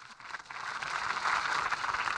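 Audience applause, swelling over the first second and then holding steady.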